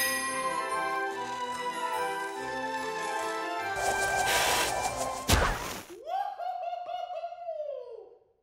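Cartoon score music with crash and impact sound effects, the loudest hit about five seconds in, followed by a wavering tone that slides downward near the end.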